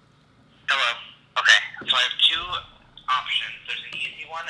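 Speech over a phone's speakerphone: a voice on the call talking in short phrases, thin-sounding and cut off at the top like a phone line.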